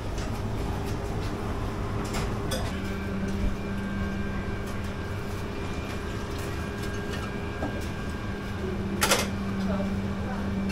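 Steady mechanical hum of fish-and-chip shop kitchen equipment, such as fryers and extraction running, with a second hum tone joining about three seconds in. A single sharp clatter sounds about nine seconds in.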